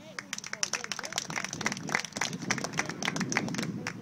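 Spectators clapping in an outdoor crowd, the claps irregular and overlapping throughout, with voices calling out among them.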